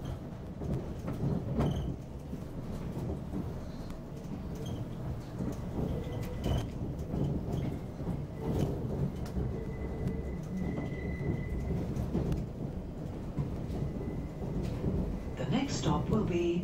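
Inside a Class 720 electric multiple unit on the move: a steady low rumble of wheels running on the track, with occasional faint clicks over the rails. A faint high whine comes in for a few seconds in the middle.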